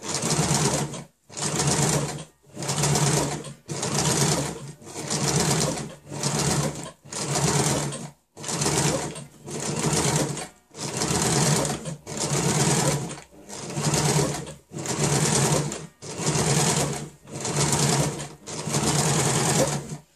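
Electric Janome domestic sewing machine stitching in about sixteen short runs of roughly a second each, stopping briefly between them. The stop-start stitching is the machine being run gently so the fabric can be steered along a curved line.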